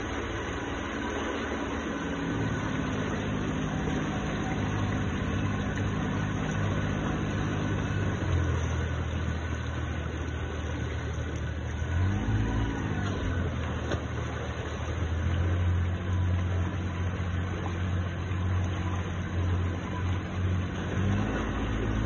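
Speedboat engine running at speed over rushing water and wake. The engine's pitch shifts a few times, with a brief dip and rise in revs about twelve seconds in.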